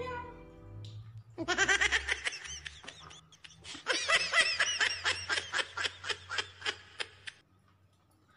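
A woman laughing in two bouts of rapid, high-pitched 'ha-ha' pulses, the second longer and trailing off, at a mishap: a wine bottle just smashed open and spilled.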